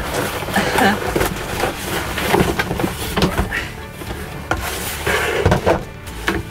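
Background music, over the rustle and scrape of a cardboard box and short knocks as a plastic toilet cassette is lifted out of it and set down on a table.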